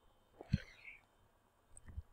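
Quiet room tone with a faint whispered breath from a man about half a second in.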